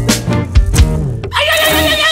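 Folk-punk band playing an instrumental break with drums and guitar. About halfway through the drums drop out and a long wavering tone takes over, sliding slowly down in pitch.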